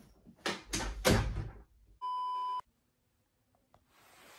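A few sharp knocks and rustles of a door being pushed open, then a steady electronic beep about half a second long, cut off cleanly and followed by dead silence.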